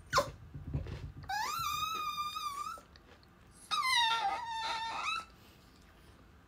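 A dog whining: two long high whines, the first sliding up and then held with a waver, the second starting higher and sliding down, each about a second and a half long.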